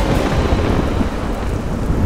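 Heavy rain pouring down, with a low rumble of thunder underneath.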